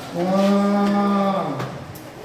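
A moo: one long, steady cow call lasting about a second and a half.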